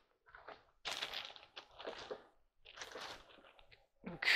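Faint rustling and handling noise in four short bursts: clothing and objects moving close to a clip-on microphone.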